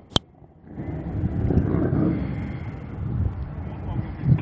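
A sharp click, then a steady low rumble of vehicle engines and wind on the microphone, with voices in the background.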